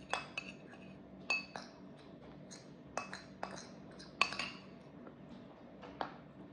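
Metal spoon clinking and scraping against a ceramic bowl while scooping ice cream: about ten sharp, ringing clinks at irregular intervals, most of them in the first half.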